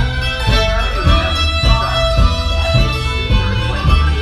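Live bluegrass trio playing an instrumental passage: strummed acoustic guitar, bowed fiddle and plucked upright bass on a steady beat of about two strokes a second.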